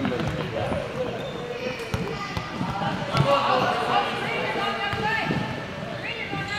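Children's indoor soccer on a hardwood gym floor: soccer balls thud and bounce on the boards amid running feet, with children's high voices calling out.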